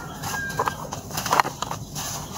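Hands crushing dry red dirt chunks in a plastic tub: irregular gritty crunching and crackling as the lumps break, with grit and powder sifting down.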